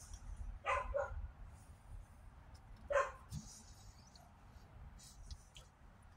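A dog barking, fainter than the nearby voice: two quick barks about a second in and one more bark near three seconds.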